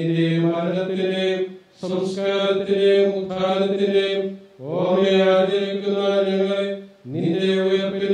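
A man chanting liturgical prayer on a nearly level reciting tone, in phrases of about two and a half seconds separated by short breaths. Some phrases begin with a quick upward slide.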